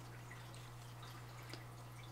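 Quiet room tone with a steady low hum. About one and a half seconds in there is a faint tick from a felt-tip Sharpie marker touching the card stock before it draws the next curved line.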